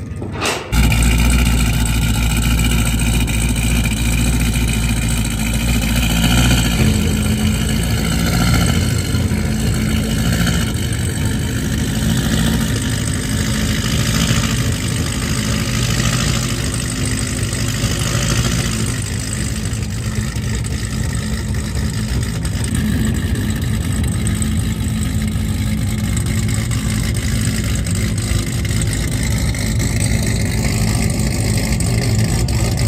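Chevrolet Camaro ZL1's supercharged V8 cranks and fires about half a second in with a loud flare, then idles steadily, the idle settling a few seconds later.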